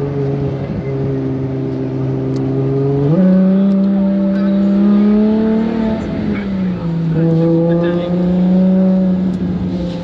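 Ferrari Monza SP2's 6.5-litre V12 pulling under load, heard from the open cockpit with wind noise. The engine note jumps sharply higher about three seconds in, drops back a little about three seconds later, then climbs slowly.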